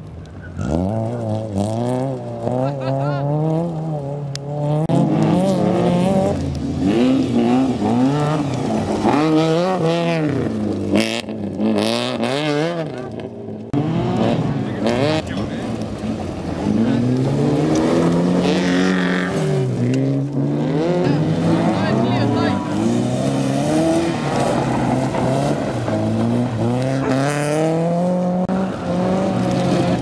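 Rally car engines on a dirt slalom course, revved hard and backing off again and again through gear changes and corners, so the engine note keeps climbing and dropping in pitch.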